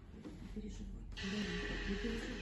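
Soft, indistinct voices in a room, with a steady hiss that comes in about a second in.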